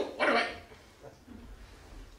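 A man's short wordless vocal sound early on, followed by faint low room hum.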